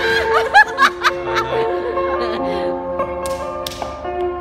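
Women laughing in short bursts through the first second and a half, over steady instrumental stage music with long held tones. Two sharp smacks come near the end.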